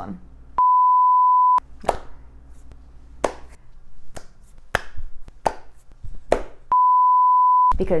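Two one-second censor bleeps, each a steady 1 kHz tone that replaces the audio, one near the start and one near the end. Between them come a handful of short, sharp clicks.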